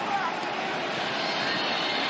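Stadium crowd noise: a steady, even din from the crowd during a live play.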